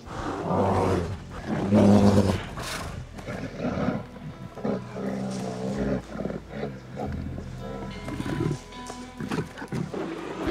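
A bear roaring twice in quick succession near the start, over background music.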